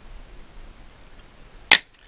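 A single gunshot from a long gun, a sharp brief crack about three quarters of the way through.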